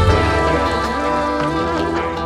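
Background music with sustained instrument notes.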